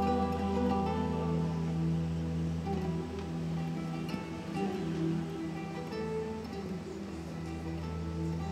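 Extended-range acoustic guitar with many strings played fingerstyle: a run of plucked melody notes over low bass notes left ringing.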